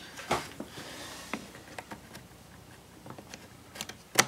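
Scattered light clicks and taps of hard plastic parts being handled and fitted on a small engine, the sharpest click near the end.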